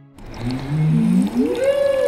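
Several people sucking cola through drinking straws from glasses, a slurping sound with gliding tones that rise and then fall.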